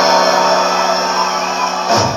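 Electric guitar playing along with a live rock band recording of the song's closing bars, a chord held and ringing steadily until it is cut off at the end.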